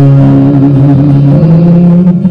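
A man singing a long held note over acoustic guitar at the end of a sung line, the note stepping up in pitch about two-thirds of the way through.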